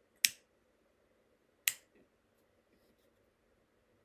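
A handheld lighter struck twice, about a second and a half apart, each strike a sharp click, as a cigarillo is lit.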